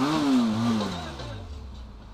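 Benelli TRK 502X parallel-twin engine given a single quick throttle blip while standing still: the revs jump and then fall back over about a second and a half to a low idle.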